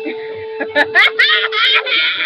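One steady note bowed on a string instrument, held for about a second and a half, with high-pitched shrieking laughter breaking in about a second in and carrying on over it.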